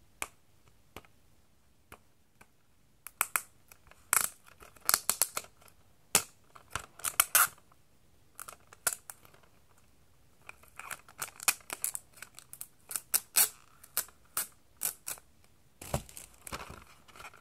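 Fingers picking and peeling plastic wrapping and a sticky security strip off a DVD case: a run of short crackling clicks and scratches starting about three seconds in, pausing briefly in the middle, then going on.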